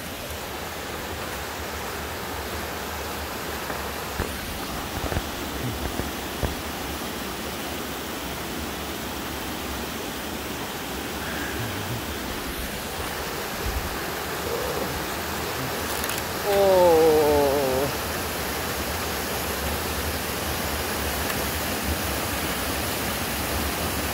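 Steady rush of a rocky creek running through rapids, with a few faint knocks early on. About two-thirds of the way through, a person gives one brief wavering vocal cry, the loudest moment.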